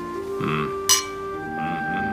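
Two drinking glasses clinked together once in a toast, a single short bright chink about a second in, over background music of held notes.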